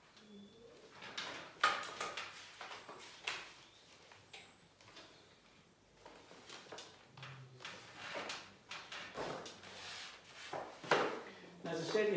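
A strip of wallpaper rustling and crackling as hands slide and press it flat against the wall, in a series of irregular short rustles and scrapes.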